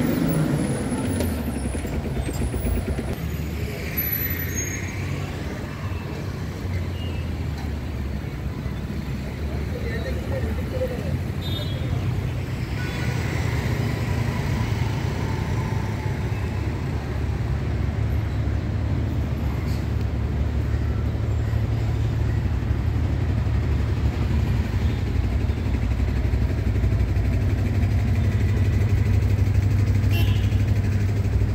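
City street traffic: the engines of cars, motorbikes and buses running and passing in a steady low rumble, growing a little louder in the second half.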